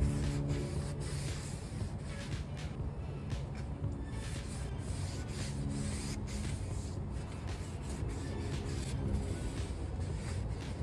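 Background music over the rubbing of an oiled paper towel, held in metal tongs, wiped in irregular strokes across a hot griddle plate while it is seasoned with grapeseed oil.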